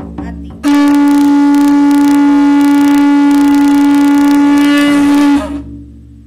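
Conch shell trumpet (atecocolli) blown in one long, steady, loud note lasting about four and a half seconds, starting near a second in and stopping abruptly. It is sounded as a ceremonial salute to the direction just honoured.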